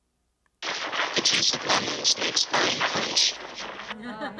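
A degraded, noise-like playback of the spoken sentence 'The juice of lemons makes fine punch', used as a speech-perception demonstration. It starts just over half a second in, lasts about three seconds and is harsh and crackly, its words hard to make out unless the listener already knows the sentence.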